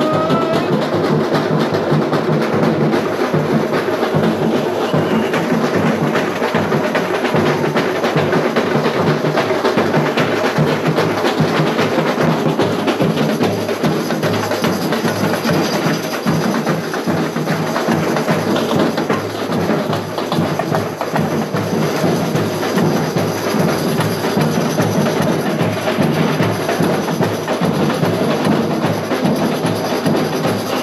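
Samba school drum section (bateria) playing a steady, dense samba rhythm on drums and percussion.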